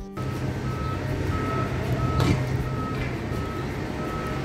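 Reversing alarm on road-paving machinery beeping evenly about every two-thirds of a second, over the low steady running of a vehicle engine. A single sharp knock comes about halfway through.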